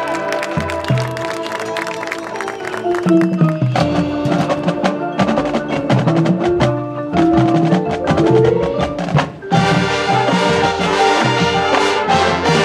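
High school marching band playing: brass and winds holding and moving through sustained notes over busy clicking percussion and mallet keyboards from the front ensemble. The sound thins briefly just before ten seconds in, then the full band comes back in fuller.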